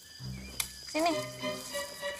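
Film background music with low sustained notes entering just after the start, over a steady high chirring of insects in the forest ambience. A single short spoken word about a second in.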